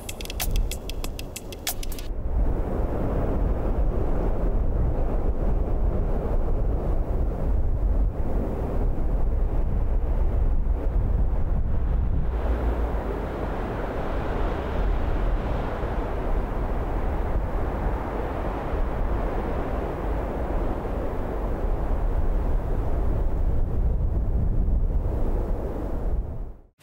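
Steady outdoor wind noise: a deep rumble on the microphone under a rushing hiss that turns brighter about halfway through. A short electronic logo sting with rapid ticks plays in the first two seconds.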